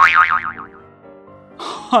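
Cartoon 'boing' sound effect: a wobbling tone that falls in pitch over under a second, followed by faint held music notes.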